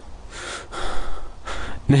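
A man breathing out audibly in a few breathy puffs, with short breaks between them.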